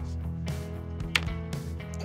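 Background music: low, steady held bass notes with softer sustained tones above, and a single sharp click about a second in.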